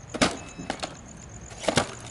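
Self-balancing hoverboard dropping down concrete steps: several sharp knocks as its wheels hit the step edges, one shortly after the start and the last near the end.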